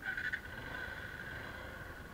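Motorcycle horn: a held, steady high note that starts suddenly, loudest in its first moment.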